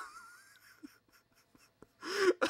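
Near silence: room tone with a voice trailing off at the very start, then a few faint clicks as a small vinyl toy figure is handled.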